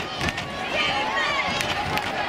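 Voices of players and spectators on a football field, with several sharp knocks near the start and again near the end.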